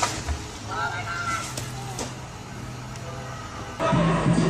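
A cut treetop falling and hitting the ground, heard as a sharp crack at the start and a couple of further cracks about one and a half to two seconds in, over a steady low engine hum; a voice cries out briefly about a second in.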